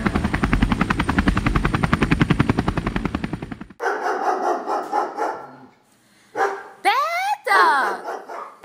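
A fast whirring pulse like spinning rotor blades, about ten pulses a second, stops sharply a little under four seconds in. A dog then snarls roughly and gives two barks that rise and then fall in pitch.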